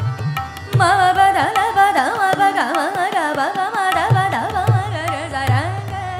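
A woman singing Hindustani classical vocal in Raag Madhuvanti, coming in about a second in with quick ornamented runs and slides. Tabla strokes and harmonium accompany her.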